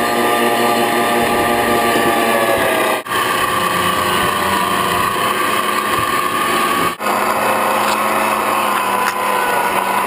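Electric meat grinder running steadily with a loud motor whine, grinding chunks of menhaden into chum. The sound drops out briefly twice, about three and seven seconds in.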